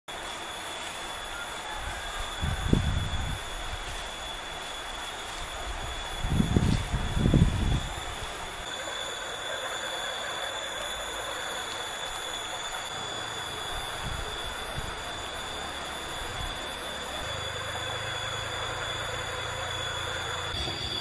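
Outdoor forest ambience: a steady high-pitched insect drone with several held tones, broken by low gusts of wind on the microphone about three and seven seconds in.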